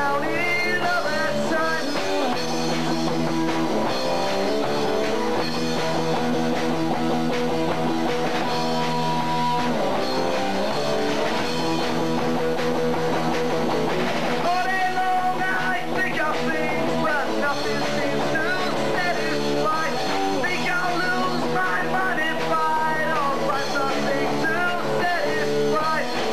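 Live rock band playing a song: electric guitars and a drum kit, with a singer at the microphone.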